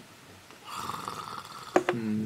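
A sip slurped from a paper cup, a rasping sound about a second long, followed by two sharp knocks close together near the end.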